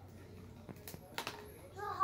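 A few faint clicks and crinkles of plastic packaging being handled as a toy capsule is worked open by hand, followed near the end by a child starting to speak.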